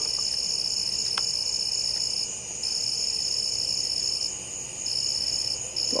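A steady, high-pitched trilling chorus of night insects, broken by brief pauses about two seconds in and again near four and a half seconds.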